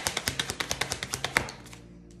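Tarot deck shuffled by hand, the cards clicking against each other in a quick, even run of about ten a second that stops about one and a half seconds in.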